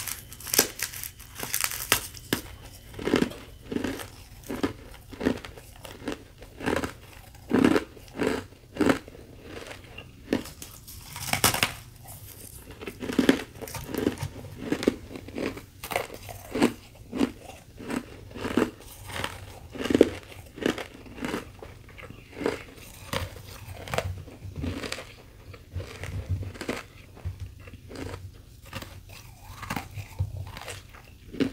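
Bites and chewing of a thin sheet of carbonated ice crusted with powdery frost: a steady run of sharp crunches, roughly one to two a second.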